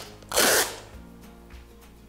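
Brown packing tape pulled off its roll in one short rip about half a second in, over steady background music.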